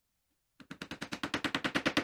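Small hammer tapping rapidly on a wooden block held against the edge of an MDF panel, about ten quick strikes a second for a second and a half, getting a little louder.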